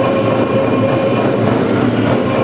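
Group of voices singing a song with hand drums beating, a steady held note running through the singing.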